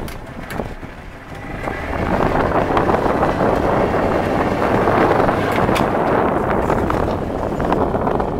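Wind buffeting the microphone and water rushing past a moving motorboat, with its engine running underneath. It gets louder about a second and a half in and then holds steady.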